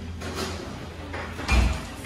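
Close mouth and breath noises of someone taking a bite of sushi and chewing, with a dull thump about a second and a half in.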